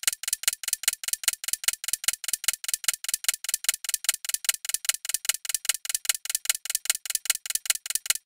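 Clock-ticking countdown sound effect, even and rapid at about five ticks a second, timing the ten seconds allowed to answer a quiz question.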